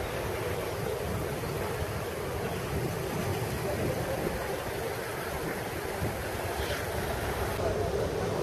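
Steady wind noise on the microphone over background crowd chatter.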